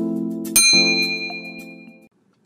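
A bright bell ding rings out about half a second in over a held musical chord, both fading away by the end. This is the notification-bell sound effect of an animated subscribe-button intro.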